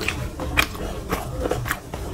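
Close-miked chewing of a mouthful of rice and fish curry eaten by hand, with wet mouth clicks coming about twice a second.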